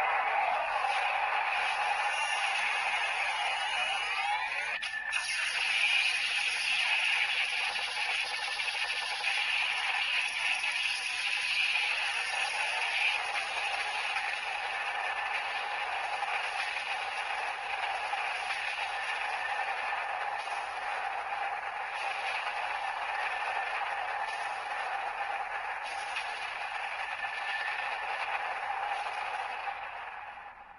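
Electronic sound effect played through the small speaker of a CSM Kamen Rider Ryuki toy: one long, steady, grainy noise that runs on without a break.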